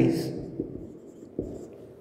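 Marker pen writing on a whiteboard, faint strokes of the tip across the board, with one short knock about a second and a half in.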